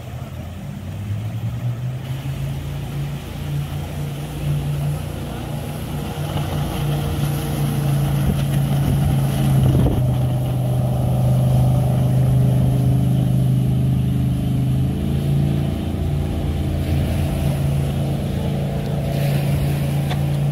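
Jet boat engine running as the boat powers up through river rapids: a steady low hum that grows louder toward the middle and shifts slightly in pitch later on, over the rush of the rapids.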